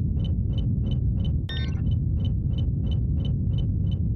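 Sci-fi electronic ambience: a deep steady rumble under a short high beep that pulses about three times a second, with one brighter electronic chirp about a second and a half in.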